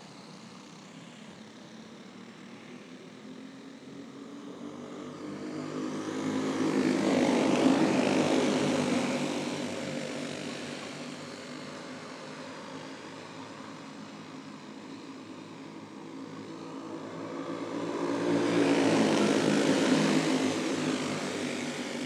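A field of Sr. Champ 425 kart engines racing on a dirt oval under green. Many small engines buzz together, and the sound grows louder twice as the pack comes around, about seven seconds in and again near the end.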